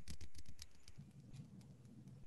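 Soft, rapid light tapping: a quick patter of small clicks, strongest in the first half second and then fading out.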